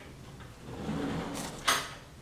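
A short sliding rumble, then one sharp clack near the end, like something being pushed shut.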